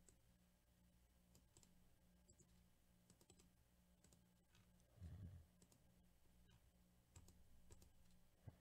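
Near silence with faint computer mouse clicks scattered through it, as the Randomize button is clicked over and over. There is one low thump about five seconds in, over a steady low hum.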